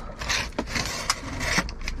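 A taped cardboard box being pulled open by hand: cardboard and packing tape scraping and rustling in a run of short scrapes with a few light clicks.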